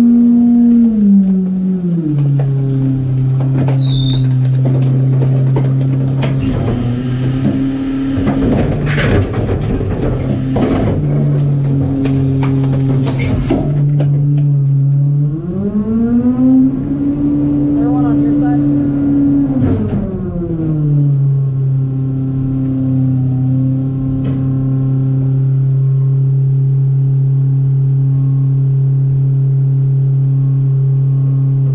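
Garbage truck's diesel engine dropping from raised revs to idle, running steadily, then speeding up for about five seconds near the middle before settling back to idle. The engine speed rises when the rear loader's hydraulics are working. About a quarter of the way in, a run of clattering knocks is heard as trash and loose items land in the steel hopper.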